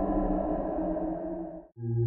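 Dark ambient background music: a sustained droning chord that fades away about three-quarters of the way through, followed after a brief gap by a new low humming drone with a thin high tone.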